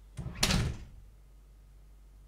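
A door shutting: a single dull thud about half a second in that fades quickly.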